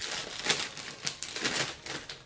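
A plastic snack bag of pretzel sticks being pulled open and handled, crinkling in a run of irregular rustles and crackles.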